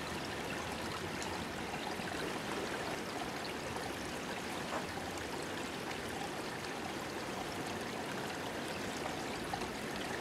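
Small creek running steadily, a continuous trickle and burble of shallow water.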